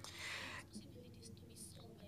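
A short breath into a close microphone, a soft hiss lasting about half a second, followed by faint low hum and murmur.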